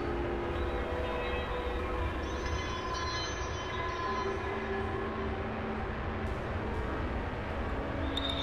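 Experimental electronic drone music from software synthesizers: several held tones at different pitches layered over a steady low rumble and hiss.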